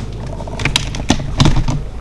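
A run of irregular clicks and light knocks, starting about half a second in, over a steady low hum.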